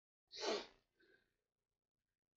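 A person sneezing once, followed by a much fainter short breath sound about half a second later.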